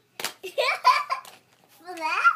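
A young child's voice, high and sing-song, saying words that cannot be made out. A single sharp click, such as a plastic toy being handled, comes about a quarter-second in.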